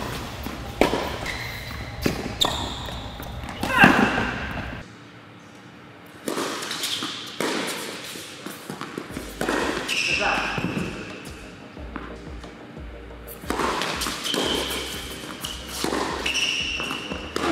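Tennis rally on an indoor hard court: racquets striking the ball and the ball bouncing, as sharp knocks at irregular intervals, with short high squeaks of shoes on the court.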